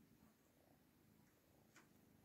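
Faint cat purring, close to silence, with a soft tick near the end.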